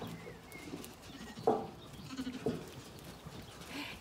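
Zwartbles sheep bleating: two short bleats about a second apart, near the middle.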